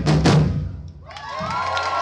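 A samba batucada drum ensemble of surdos and snare drums plays its final strokes, which stop about half a second in and ring out. About a second in, the crowd starts cheering and whooping.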